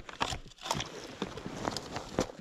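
Irregular knocks and clacks of a plastic tripod pole mount for a sonar transducer as it is handled and set down on the ice over a fishing hole, about five knocks spread across two seconds.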